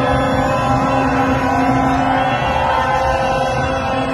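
Several horns sounding long, steady blasts at different pitches over the noise of a large street crowd; the lowest horn note holds for about two seconds and then drops out.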